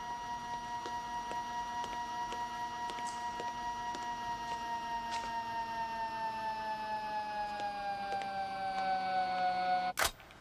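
Sustained electronic chord of several steady tones held together. Over the second half it slides slowly down in pitch and grows louder, then cuts off suddenly at the end. Faint clicks are scattered through it.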